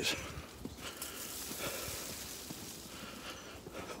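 Footsteps in deep snow, faint and uneven.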